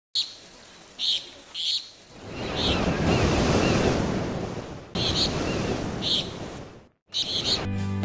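Ocean surf swelling and washing back in two long surges, with short high bird chirps every second or so over it. The sound cuts out briefly just before the end, and music starts.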